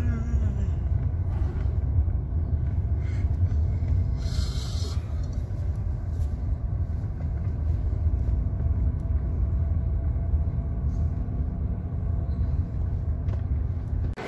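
Steady low rumble of a car's engine and tyres heard from inside the cabin as it drives down a concrete car-park ramp, with a brief hiss about four seconds in.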